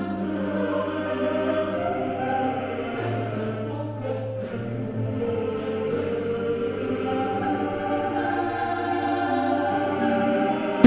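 Choral music: voices holding long, slow chords, the notes changing only every second or two.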